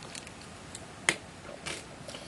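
Quiet room tone with a few small clicks, the sharpest about a second in.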